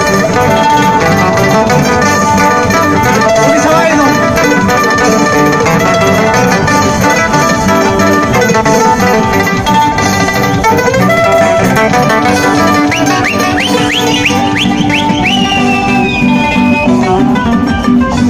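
Live amplified Andean string band: several guitars strumming with a small high-pitched plucked string instrument playing the melody over them, loud and steady throughout. About three-quarters of the way through, a shrill sliding sound rises and then falls over the music.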